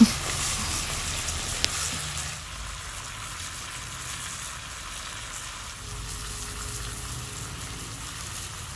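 Meat frying in hot oil in a wok, sizzling, the sizzle dropping after about two seconds to a quieter steady hiss.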